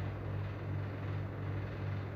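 Steady low mechanical hum of a running household machine, even in level with no breaks.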